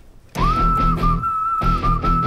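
Background film score: a whistled tune sets in about half a second in and holds one high note, over a pulsing bass beat.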